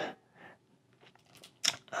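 Mostly quiet, with a few faint rustles and one short crinkling crackle near the end from a small plastic lure package being handled in the fingers.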